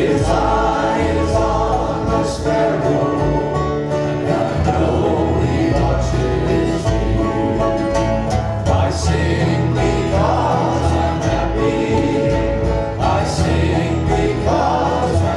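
A hymn sung by a congregation with a country-gospel band: several voices singing together over strummed acoustic guitars and banjo.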